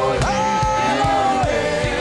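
Gospel worship song: a male lead and female backing singers hold long notes together over band accompaniment with a steady low drum beat.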